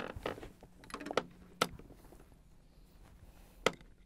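Clicks and knocks of a wireless guitar receiver being plugged into a wah pedal's input jack: several sharp clicks in the first second and a half, one about a second later, and one more near the end.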